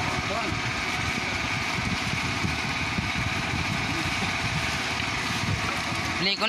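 A small engine running steadily, a constant mechanical drone with a rough low rumble.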